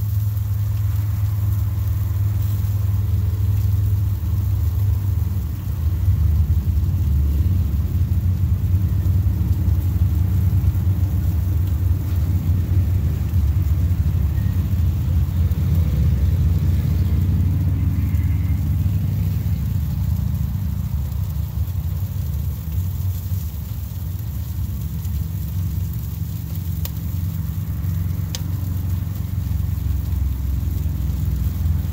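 A loud, steady low rumble throughout, dipping briefly about five seconds in.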